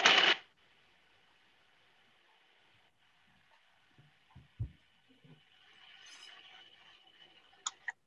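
Food processor blending a thick sunflower-seed and apricot paste: a louder start, then a faint steady whine that breaks off briefly about three seconds in. A few soft knocks come around the middle and two small clicks near the end.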